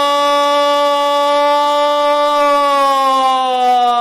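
A sports commentator's long, held goal call, "¡Gol!", stretched into one loud sustained shout. It holds a steady pitch and then slowly sinks in pitch over the last second or so.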